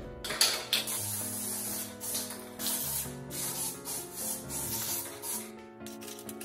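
Aerosol insecticide can spraying in repeated short hisses.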